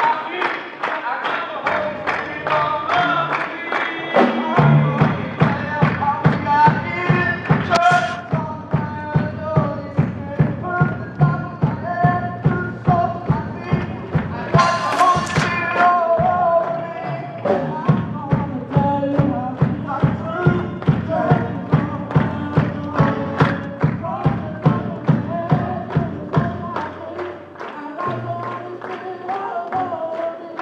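Male vocal group singing a congregational worship song with acoustic guitar, over a steady low beat of about two to three strokes a second that comes in a few seconds in and drops out near the end.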